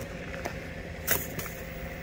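A sharp click about a second in, with a softer one just after, as a toaster is set going on a portable power station, over a steady low hum.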